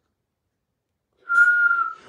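A single short whistle, one steady high note held for about half a second, starting a little over a second in after silence.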